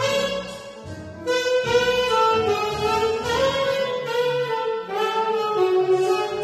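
Tenor saxophone playing a melody in sustained notes, with a short break about a second in.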